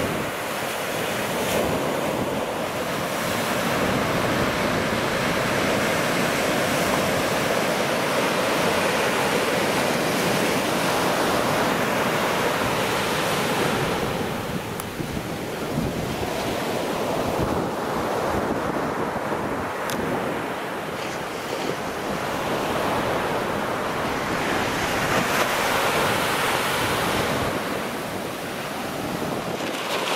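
Small ocean waves breaking and washing up a sandy beach, a continuous surf that swells and eases with each wave, with wind buffeting the microphone.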